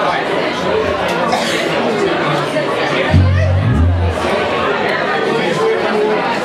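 Restaurant crowd chatter mixed with a live band's instruments playing loose notes between songs, including two deep notes about three seconds in.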